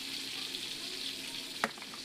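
A small bluegill fillet sizzling steadily in olive oil in a frying pan. There is a single sharp click about a second and a half in.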